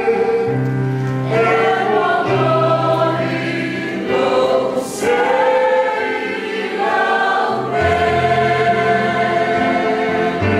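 A large group of men, women and children singing a hymn together as a choir, moving slowly from one long held note to the next.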